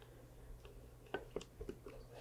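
Faint pouring of thick green chile sauce from a blender jar onto enchiladas in a glass baking dish: a few soft ticks and plops in the second half over a low room hum.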